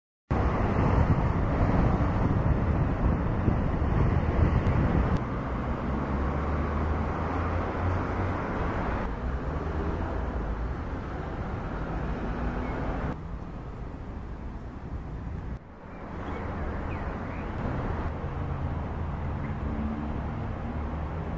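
Steady outdoor background noise of distant road traffic, heaviest in the low end. It changes level abruptly a few times where the recording is spliced, with a brief dip about three-quarters of the way through.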